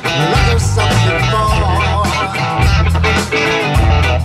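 A live rock band playing: electric guitars over bass guitar and drums.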